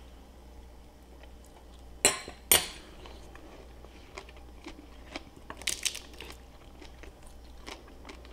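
Crisp air-fried wonton-skin taco shell crunching as it is bitten and chewed: two loud crunches about two seconds in, then fainter crackles and clicks.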